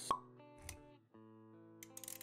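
Intro sting of music with sound effects: a sharp pop just after the start and a second short hit a little before the middle. Then held synth-like chords, with quick clicks near the end.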